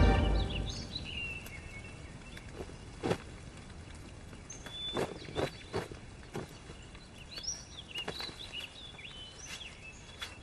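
Quiet outdoor woodland ambience with birds chirping, and about half a dozen short, sharp clicks scattered through the middle. A music cue fades out at the start.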